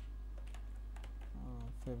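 Computer keyboard being typed on, a scattering of light key clicks over a steady low hum.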